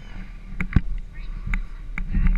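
Small dirt-bike engine idling low and steady, with a few sharp clicks over it.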